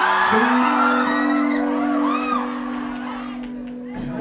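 A live rock band's held note ringing out and slowly fading while the audience whoops and cheers.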